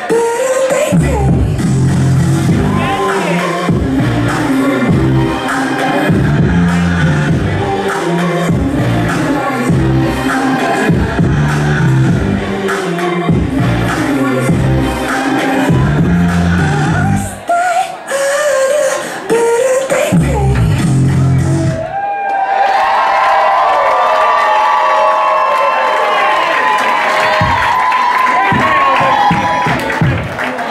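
Pop dance track with sung vocals and a heavy, steady beat played loud over a club sound system. About two-thirds of the way through the beat drops out and only higher-pitched sound carries on.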